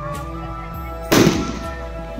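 Background music with a single loud firecracker bang about a second in, fading quickly.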